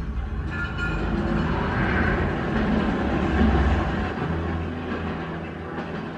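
Train running with a steady low rumble, heard on a TV drama's soundtrack.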